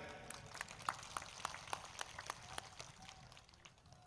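Faint, scattered, irregular clicks and crackles, several a second, over low background noise.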